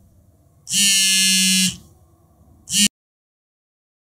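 Harsh electronic alarm buzzer going off in buzzes about a second long. One full buzz comes about a second in, then a short buzz near three seconds that cuts off suddenly.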